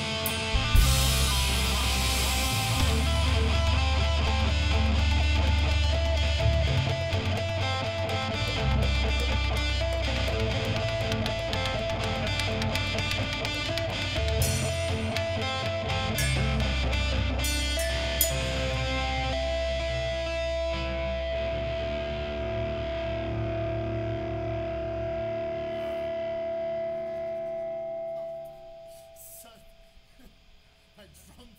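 A rock band playing live in a small room: distorted electric guitar, drum kit and synthesizer with a heavy low end. Near the end the band drops away and one held note rings on alone, then stops a second or two before the close.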